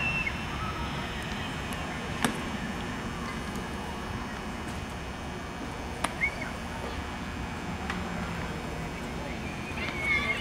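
Open-air ballfield ambience: a steady low rumble with a single sharp pop about two seconds in and a quick double pop about six seconds in, typical of a baseball smacking into a catcher's mitt.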